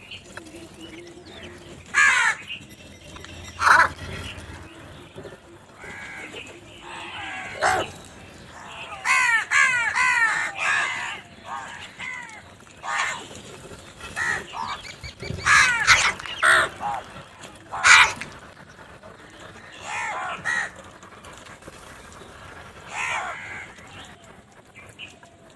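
House crows cawing repeatedly, a flock calling in loud separate caws with a quick run of several calls in the middle.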